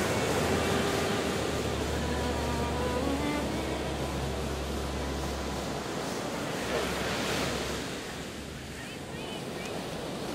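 Sea surf breaking and washing up a sandy beach, a steady rush of waves, with wind rumbling on the microphone through the first half. It eases a little near the end.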